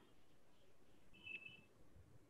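Near silence, with one faint, short, high electronic beep a little after a second in.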